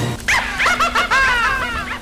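A dog yelping in a quick run of short yelps, each falling in pitch.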